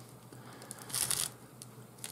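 A strand of synthetic three-strand rope is pushed and drawn through a gap in the rope's lay while splicing: a brief rasping rustle of rope rubbing on rope about a second in, with a few faint handling clicks.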